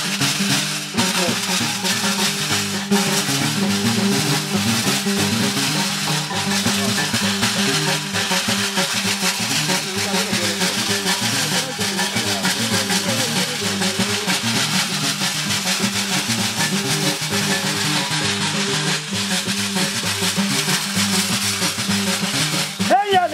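Live West African music: a harp-lute (ngoni) playing a repeating pattern with percussion, steady and unbroken.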